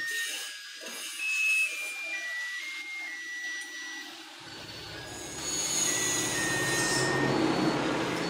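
A thin electronic melody of single pure notes, one after another, like a greeting-card or toy music chip. About four and a half seconds in, a steady rushing noise with a low rumble comes in under it.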